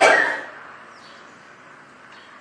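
A man's cough at the very start, a short burst that dies away within about half a second. Then quiet room tone.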